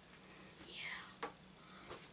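A kid's quiet, breathy "yeah", whispered a little under a second in, then two faint short clicks over low room tone.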